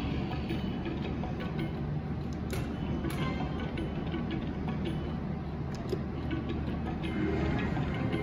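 Wild Life video slot machine playing back-to-back spins: electronic reel-spin sounds and game music, with sharp clicks about two and a half, three and six seconds in.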